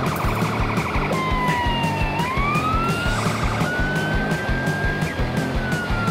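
Electronic siren from an RC fire engine model's sound module, switching between a fast warbling yelp and slow wailing glides that fall and rise in pitch, with a long slowly falling wail near the end. A steady beat of music plays underneath.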